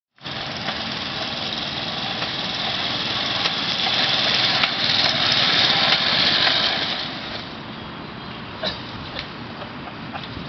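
Small engine of a homemade monowheel running, growing louder up to about six seconds and dropping after about seven. Near the end come a couple of sharp ticks from the welded seam in the wheel as it rolls.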